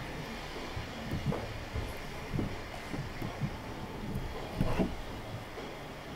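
Audio from the opening seconds of a live concert video playing through a PA loudspeaker in a large room, heard muffled and echoing. It comes across as a low rumble with scattered irregular thumps, loudest near the end, and no clear tune or beat.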